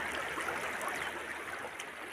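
Shallow rocky stream running over stones: a steady wash of flowing water that eases slightly toward the end.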